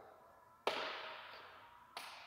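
Power-folding side mirror on a 2022 Ram 1500 folding in: a sudden click about two-thirds of a second in, then the fold motor's whir fading over about a second, and another click near the end.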